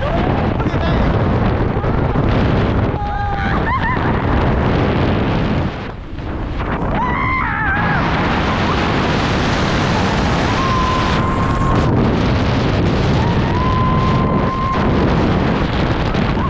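Wind rushing over the camera microphone during a tandem skydive; it grows fuller and stronger about halfway through, as the view banks steeply. A few short high-pitched cries and squeals from the jumpers cut through the wind.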